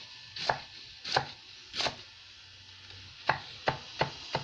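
Kitchen knife chopping on a wooden cutting board: about five separate strokes, unevenly spaced, with a pause of a second and a half in the middle.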